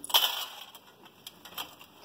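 Small hard clinks and rattles of bobbins in a metal tin being handled: a sharp clatter just after the start, then lighter scattered clicks.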